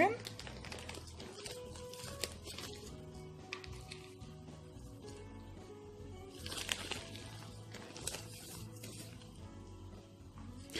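Plastic potting-soil bag crinkling in short rustles as a hand scoops soil out of it, loudest a little past the middle, over faint background music with soft held notes.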